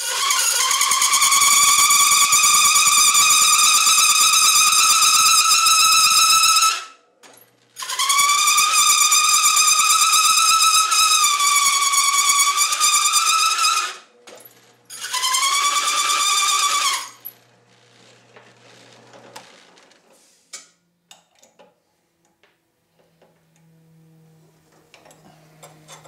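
Large hole saw in a drill press cutting into 10-gauge steel plate, giving a loud, steady high-pitched squeal in three passes of about six, six and two seconds. After the last pass the drill press motor hums for a couple of seconds before stopping, followed by faint clicks.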